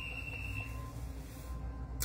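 A single high-pitched beep, held steady for under a second near the start, over a low hum.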